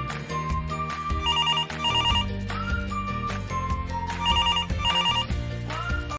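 Telephone ringing in double rings, two quick rings and then two more about three seconds later, over background music with a steady beat.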